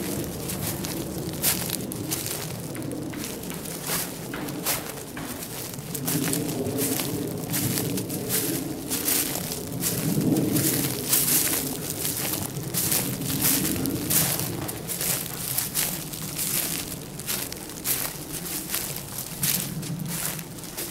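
Footsteps crunching through dry pine needles and leaf litter at a walking pace, an uneven run of crackles with a low rumble underneath.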